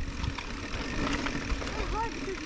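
Mountain bike rolling down a dirt forest trail: a low rumble and rattle of tyres over packed dirt and small stones, with wind on the microphone. A faint steady hum joins about halfway through.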